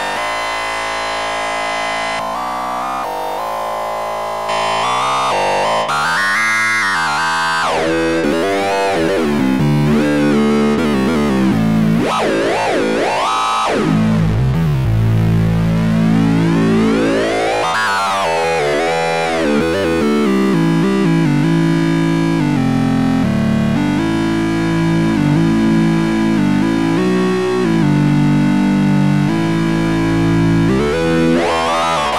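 Hyperion software synthesizer playing sustained notes through an oscillator with hard sync engaged: as the synced oscillator's frequency is swept, the bright overtones rise and fall in repeated arcs over a steady low pitch, a few times changing note.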